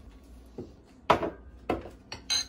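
Knocks of kitchen things being put down on a wooden counter, three knocks with the loudest about a second in.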